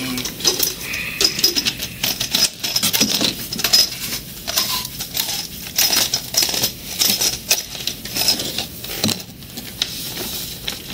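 Close-up rustling and crinkling with many small clicks and clatters, as plastic packaging and small objects are handled on a desk near a body-worn camera's microphone.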